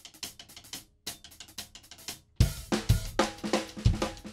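Drum kit playing: quick light strokes, then about two and a half seconds in, a fuller groove comes in with heavy bass-drum beats and washing cymbals.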